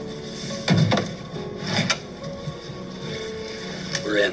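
Film soundtrack: score music with sustained low notes, cut by sharp hits about a second in and again near two seconds in.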